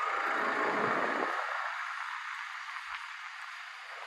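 City street traffic noise: a vehicle passes close by in the first second or so with a low rumble, then the steady hum of traffic fades slightly.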